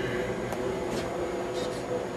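Faint light clicks from pressing the aluminum MacBook's power key, over steady low room hiss.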